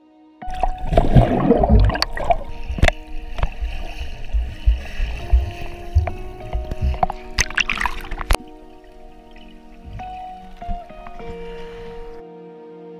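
Water splashing and gurgling around a camera dipped in a lake as swimmers kick past, with deep rumbling thumps and sharp clicks. It starts suddenly about half a second in and cuts off abruptly after about eight seconds, over steady background music that carries on alone afterwards.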